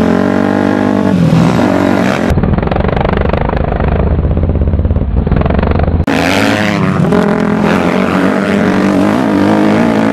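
Dirt bike engine running hard across rough ground, its pitch rising and falling as the throttle opens and closes. For a few seconds in the middle the engine is muffled under a heavy low rumble, then comes through clearly again with more revving.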